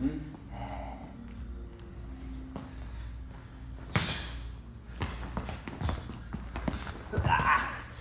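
Sparring footwork on a wooden floor: quick footsteps and shoe scuffs, with one loud sharp slap about four seconds in. Heavy breathing and a short voiced exclamation come near the end.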